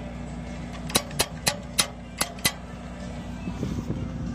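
Chain hoist ratcheting as it is pulled to lift a cracked steel ramp corner back into line: six sharp metallic clicks over about a second and a half, over a steady low hum.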